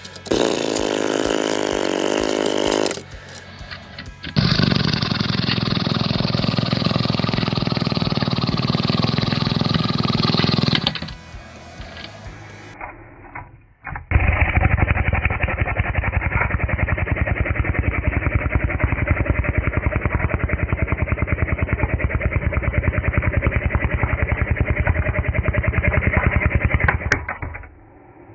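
Music in three separate pieces, each starting and stopping abruptly: a short one at the start, a longer one in the middle, and a third with a fast, even pulse through most of the second half.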